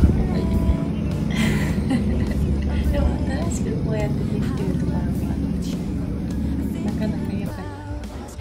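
City street noise: a steady low rumble of road traffic, with a brief louder swish about a second and a half in.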